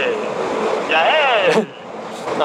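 A rider's voice: a drawn-out, high-pitched exclamation that rises and then falls in pitch about a second in, over steady wind and road noise from a motorcycle at highway speed.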